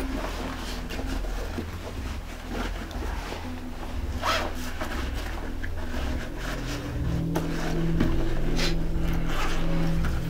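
Cloth rustling and zippers scraping as hands rummage through fabric school backpacks, in short irregular strokes. A steady low hum runs underneath and grows a little louder near the end.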